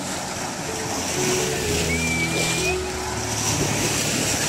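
Small waves washing and breaking on a sandy river shore in a steady wash of surf noise, growing a little louder about a second in, with soft background music of held notes underneath and a brief rising whistle near the middle.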